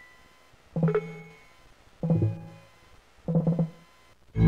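Three short Windows system sound effects from a custom sound scheme, previewed one after another about a second apart. Each is a brief multi-note synth chime that fades quickly.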